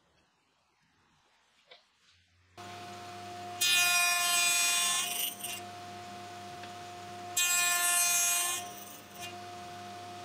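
Table saw switched on about two and a half seconds in and running steadily, with two louder passes of the blade through wood, each about a second and a half long, as a box joint jig carries the workpiece over the blade to cut the joint's fingers.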